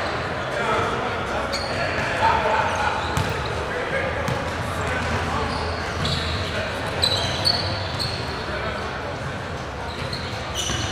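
Basketball gym ambience in a large echoing hall: basketballs bouncing on a hardwood floor, a few short high sneaker squeaks, and indistinct voices of players and onlookers.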